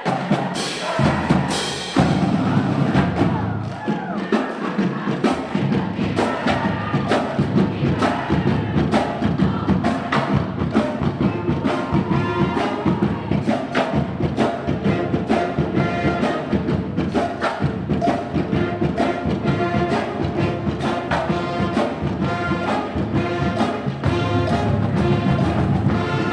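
High school pep band playing brass, woodwind and drum music, with sousaphones, trumpets and flutes over a steady drum beat.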